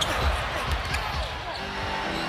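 A basketball bouncing on a hardwood court during live play, with a few low thuds, over the steady murmur of an arena crowd.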